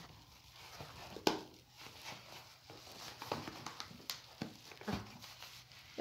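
A padded paper mailer envelope being handled and opened, giving scattered rustles and crinkles with a sharper crackle about a second in.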